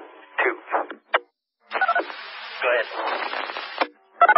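Emergency-services two-way radio: faint, garbled voice fragments and a sharp click in the first second, a short dead gap, then a keyed-up transmission of static hiss with muffled voice that cuts off abruptly just before the end.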